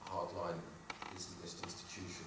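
A man's voice at a handheld microphone, hesitant and quieter than his talk around it. About a second in there are two small clicks and a brief rustle.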